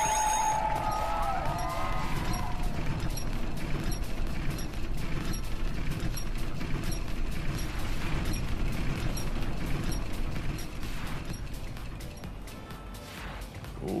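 Crazy Time bonus-round wheel spinning, with a rapid run of clattering ticks as its segments pass the pointers. The ticking dies down over the last few seconds as the wheel slows to a stop.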